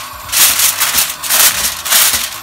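Aluminium foil crinkling and crackling in several bursts as hands crumple and press it down over the rim of a cooking pot to cover it.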